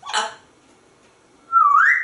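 African grey parrot giving a short whistle about one and a half seconds in: one note that dips slightly, then rises, lasting about half a second.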